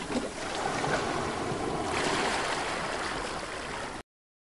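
Steady wind and water noise on a small boat at sea, the wash of the water lapping around the hull mixed with wind on the microphone. It cuts off abruptly at the end.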